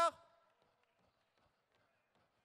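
The end of a man's word over a microphone, its echo fading within a fraction of a second, then near silence.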